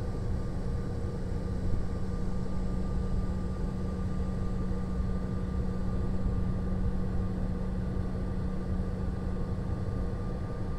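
Airliner engines and cabin rumble heard from inside the cabin as the plane rolls down the runway: a steady low rumble with a constant hum.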